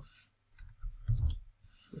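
A handful of computer keyboard keystrokes, short sharp clicks about a second long in all, as the end of a line of code is typed.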